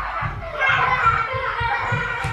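Children playing and chattering in another room, their voices blurred together.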